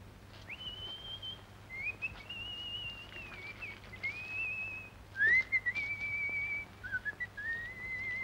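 A man whistling a slow tune in long held notes, the pitch wavering slightly on each note and stepping gradually lower over the phrase, with a steady low hum underneath.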